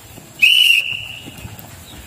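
A whistle blown once: a single steady high note that slides up briefly at the start and lasts about a second, loudest at its onset. It is the signal that starts the round, after which the players begin running.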